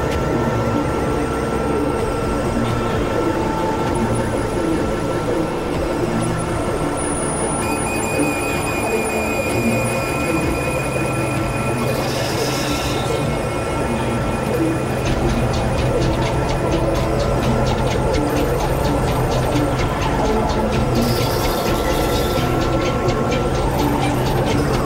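Experimental electronic drone and noise music: dense layers of held synthesizer tones over a steady low drone, with a burst of high hiss about halfway through and again near the end.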